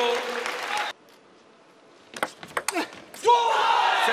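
Arena crowd noise with clapping, then after a sudden drop a quiet hall with a quick run of sharp clicks of a table tennis ball on bat and table, followed near the end by a loud burst of crowd cheering and shouting.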